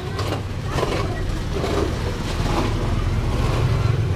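Street traffic ambience: a steady low engine hum from motor vehicles on the road, with faint voices and small knocks.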